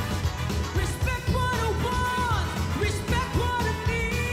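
Three singers performing a medley of 1960s pop hits in close vocal harmony over a band with a steady beat, a held note sliding down about two seconds in.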